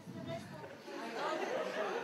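Audience chatter in a lecture hall: many voices talking over one another at once, growing louder about a second in.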